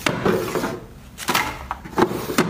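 Clear plastic organizer drawers being handled: small items clack into them and the drawers slide and knock shut, with a few separate clacks about a second apart.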